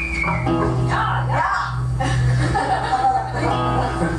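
Live band music: a bass guitar holding low notes under a strummed acoustic guitar.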